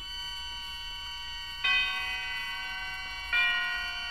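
Bell-like chime tones struck three times, about one and a half seconds apart, each ringing on and slowly fading: the tolling chimes of the radio drama's opening theme.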